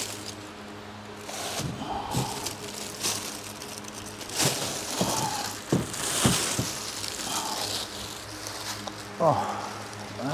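10 kg sport training plates in plastic wrap being lifted out of a wooden crate: several separate knocks and thuds as the plates bump the crate and each other, with plastic wrapping rustling, over a steady low hum.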